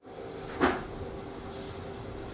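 Room noise with a steady low hum, broken by one short knock about half a second in.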